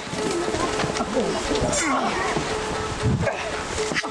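Several men shouting and yelling over one another, wordless battle cries from a staged sword-and-shield fight. A faint steady tone holds underneath.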